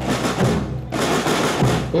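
A school marching band's drum line playing a quick, even rhythm on snare and bass drums, with a short break a little before one second in.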